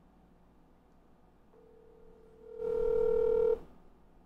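Telephone ringback tone of an outgoing call on a smartphone: one steady tone about two seconds long, faint at first, then much louder for its last second, before it cuts off suddenly.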